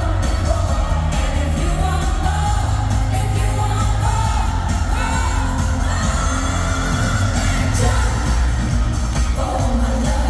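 Live pop group singing an upbeat dance-pop song over a heavy bass beat, with loud amplified arena sound.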